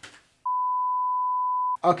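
A single steady high-pitched censor bleep, one pure tone lasting about a second and a quarter, that starts about half a second in and cuts off just before speech resumes, laid over a muted stretch of speech.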